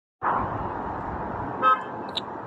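Steady outdoor background noise, with one short, loud beep near the end, like a brief horn toot.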